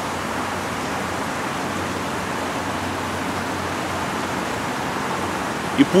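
Steady, even rushing background noise with no breaks or changes. A man's voice begins just at the end.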